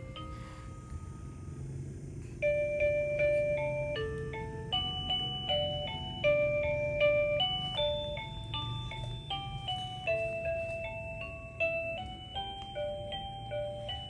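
A crib mobile's built-in music box plays an electronic lullaby of clear, chime-like single notes. The tune breaks off briefly after about a second and resumes more loudly after about two and a half seconds.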